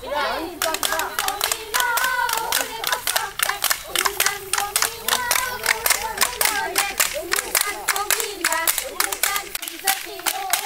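A group of women clapping fast and unevenly to a Jeng Bihu dance while their voices sing along over the claps.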